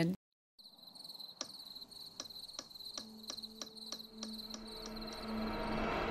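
Night-time sound effects: crickets chirping steadily, with a clock ticking about three times a second. About halfway through, a low steady hum swells in beneath them.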